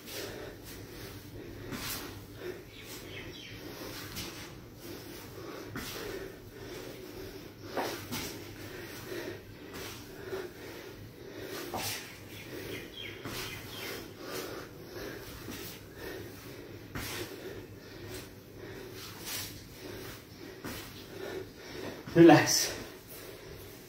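A man breathing hard from exertion during repeated reverse lunges and squats, with short sharp exhalations every second or two and his feet landing on an exercise mat.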